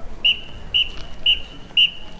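Drum major's whistle giving four short, shrill blasts about half a second apart, the cadence that counts the marching band off just before it starts to play.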